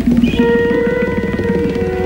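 Live rock band playing; about half a second in, several long held notes come in together and sustain as a steady chord over the low end.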